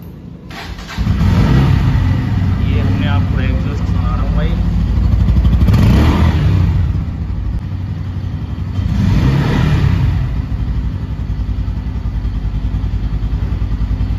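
Bajaj Pulsar N160's single-cylinder engine starting about a second in, revved twice (around five to seven seconds in, and again about nine seconds in), then idling steadily.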